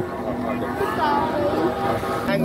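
Voices talking over a steady low drone, the kite flutes sounding in the wind.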